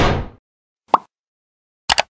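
Animated end-card sound effects: a whoosh that fades out in the first half second, a short pop about a second in, then a quick double click as the on-screen cursor presses a subscribe button.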